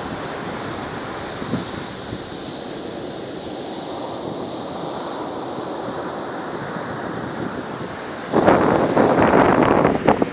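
Atlantic surf breaking and washing up a sandy beach, a steady rush of water. Near the end a much louder, choppy rush of noise cuts in.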